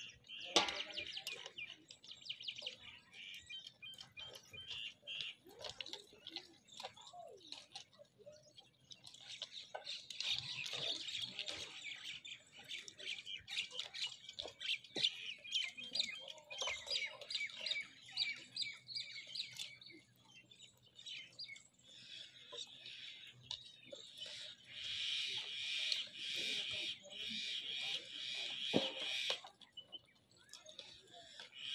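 Many small birds chirping and twittering together in a dense, continuous chorus, getting busier about a third of the way in and again near the end.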